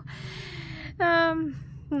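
A woman's audible sharp in-breath lasting about a second, followed by a short vocal sound that falls in pitch.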